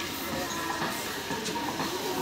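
Metal wire shopping trolley being pushed across a tiled store floor, its wheels and wire basket rattling steadily.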